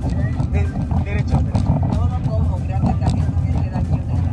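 People talking and laughing inside a moving car's cabin, over a steady low rumble of road and engine noise.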